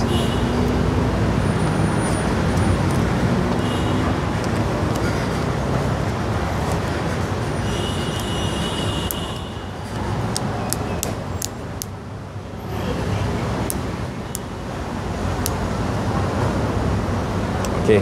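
Steady road traffic noise, with a run of small sharp clicks in the middle as a plastic phone back cover is pressed and snapped into place.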